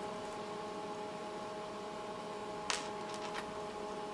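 Steady hum holding several fixed tones, typical of a bench test instrument's cooling fan running, with one sharp click about two-thirds of the way in and a fainter one shortly after as the SMA calibration short is handled.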